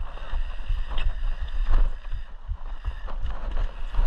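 Mountain bike riding down a bumpy dirt trail, heard on a handlebar-mounted camera: a steady low rumble of tyres and wind on the microphone, with frequent short knocks and rattles from the bike over the bumps.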